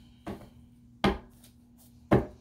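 A tarot deck being shuffled by hand: a light tap, then one sharp slap of cards about a second in.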